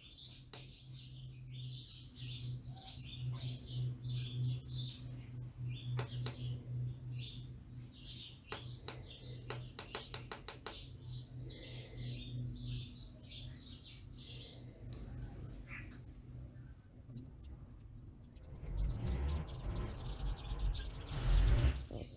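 Birds chirping in quick repeated runs over a steady low hum for most of the first fifteen seconds, with a few sharp clicks around the middle. Low rumbling handling noise comes in near the end.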